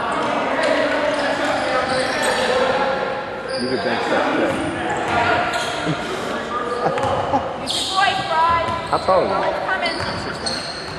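Basketball bouncing on a hardwood gym floor among players' and onlookers' voices, echoing in a large hall. Near the end come a few short, gliding sneaker squeaks.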